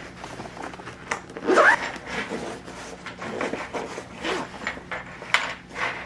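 Fabric carrying case being handled and zipped closed: cloth rubbing with several short zipper pulls and a couple of light knocks.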